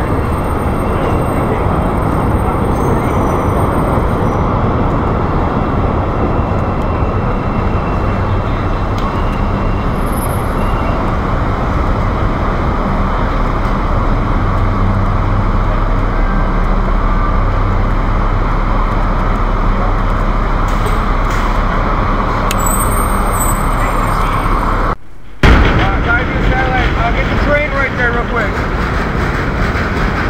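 Loud, steady rumbling street noise beneath Chicago's steel elevated 'L' tracks, with traffic and trains running. It cuts out briefly near the end, and voices follow.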